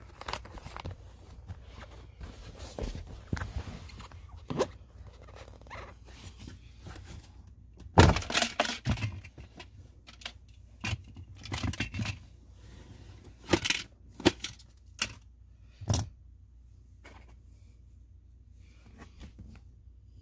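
Plastic glove box of a 2014 GMC Sierra being worked out of the dashboard: an irregular run of clicks, knocks and rattles. The loudest knock comes about eight seconds in, with a few more sharp knocks over the next several seconds.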